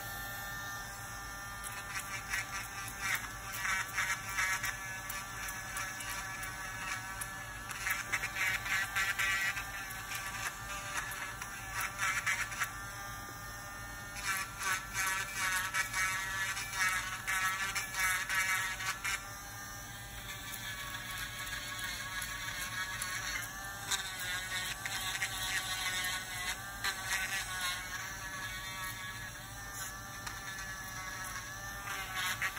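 Electric podiatry nail drill whining as its rotating burr files down a thickened, brittle toenail. The whine wavers in pitch, and several spells of gritty grinding come and go as the burr is pressed to the nail.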